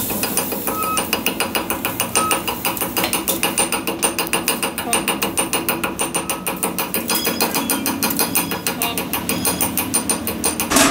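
Welder's chipping hammer tapping rapidly and steadily on the weld build-up of a repaired shaft, chipping off slag. It makes a continuous series of sharp metallic strikes, a few a second.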